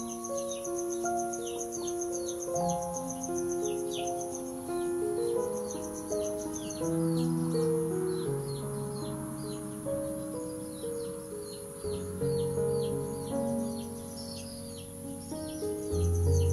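Soft background music of slow, held notes over a nature ambience: a high, pulsing cricket trill and repeated short falling bird chirps. A low bass note comes in about twelve seconds in, and the trill drops out around seven seconds in.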